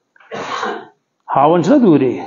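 A man coughs once, a short rough burst about half a second long close to the microphone, then goes on speaking.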